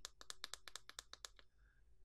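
Push switch on a rechargeable 8W soldering iron pressed rapidly over and over, a fast run of faint clicks, about a dozen in under a second and a half, then stopping. The presses are the five-press sequence that unlocks the iron's protection feature.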